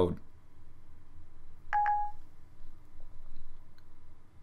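Siri's short electronic chime from an iPod touch, sounding once about two seconds in. It marks that Siri has stopped listening to the spoken command and is processing it.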